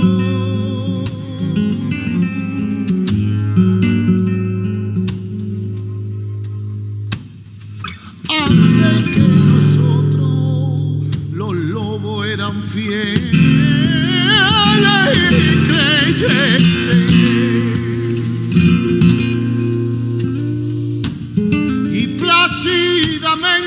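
Live acoustic music: a cello holding low sustained notes under plucked acoustic guitar, with a short drop in level about seven seconds in. In the second half a man's voice sings a melody with wide vibrato over the strings.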